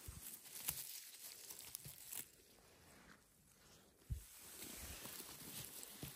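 Faint rustling and crinkling of grass, moss and dry leaves on the forest floor as a gloved hand parts them and picks chanterelle mushrooms, with scattered soft snaps and a low thump about four seconds in.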